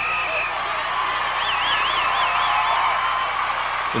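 Large rally crowd cheering and shouting in a steady mass of voices. A high warbling whistle sounds over it for about a second and a half in the middle.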